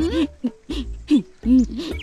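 A woman's voice making about four short, pitched exclamations, each rising and falling in pitch.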